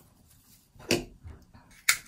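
Quiet handling of flower stems in a hand-tied bouquet. A short rustle comes about a second in, and a sharp click comes near the end.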